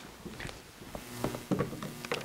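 A hymnbook being handled and set down on a grand piano's music rack: a few soft knocks and paper rustles, the plainest knock about one and a half seconds in.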